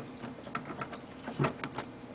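Metal hard-drive bracket being pushed back into a desktop PC's drive bay: a string of light, irregular clicks and rattles, with a firmer knock about one and a half seconds in.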